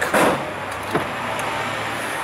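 Skoda Fabia's car door being opened: a brief noisy swish at the start, then a sharp latch click about a second in, over a steady low hum.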